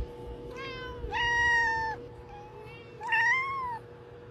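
Domestic cat meowing three times: a short meow about half a second in, a longer, level meow, the loudest, about a second in, and a third that rises and falls in pitch near the end.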